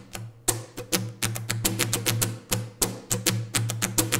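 Acoustic guitar strummed on muted strings: a quick percussive down-and-up strumming pattern, with some strokes louder and accented, and a low note ringing faintly under the muted strokes.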